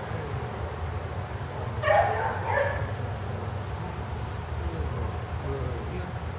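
A dog barks twice in quick succession about two seconds in, over a steady low background rumble.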